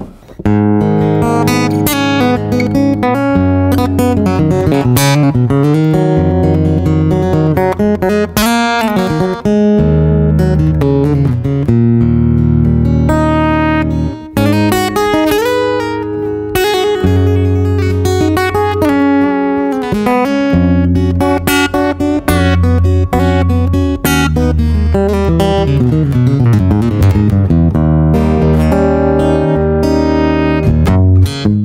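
Mahogany-top Cort Core Series cutaway acoustic guitar played fingerstyle, heard through its Fishman under-saddle piezo pickup and a Fishman Loudbox acoustic amp rather than a microphone. Picked bass notes run under a melody line, with a few gliding notes.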